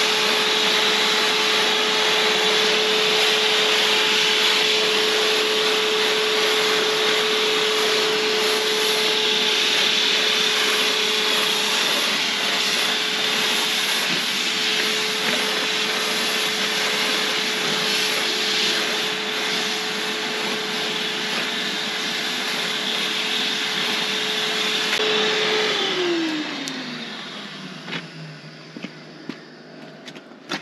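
Electric paint sprayer's turbine running steadily with a loud hiss of air while spraying paint onto a tractor. About 25 s in it is switched off and its hum falls in pitch over a few seconds as the motor winds down, followed by a few faint knocks.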